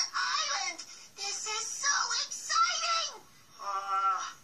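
Cartoon character voices singing a song with music behind them, in several short phrases with brief gaps, played from a television's speaker into the room.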